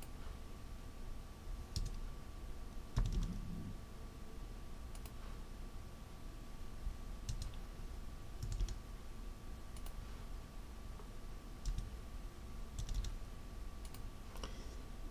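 Quiet, scattered computer mouse and keyboard clicks, a single click or a short cluster every second or two, over a faint steady high tone.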